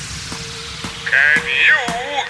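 Song's beat paused on a freeze, leaving a single held note; from about halfway in, a wobbly, quavering cartoon voice comes in over it in short bleat-like bursts.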